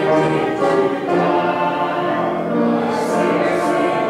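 Congregation singing a hymn together, accompanied on keyboard, in steady held notes that change every second or so.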